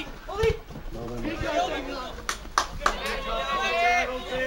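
Spectators talking, with three quick sharp claps a little past halfway through.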